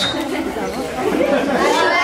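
A group of schoolchildren talking at once: indistinct, overlapping chatter.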